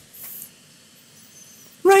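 A short breath into a close microphone, then quiet room tone with faint thin high tones. A man's singing voice starts again near the end.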